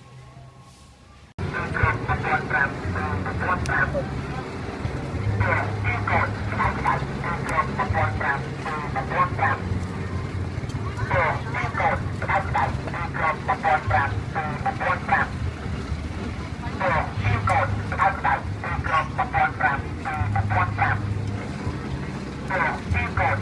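Market-stall ambience: people talking close by in a language the recogniser did not transcribe, over a low, steady engine hum that shifts pitch now and then. The sound cuts in abruptly about a second in.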